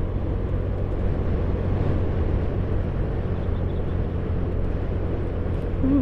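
Honda Scoopy automatic scooter's small single-cylinder engine running steadily under way, mixed with wind and road rumble.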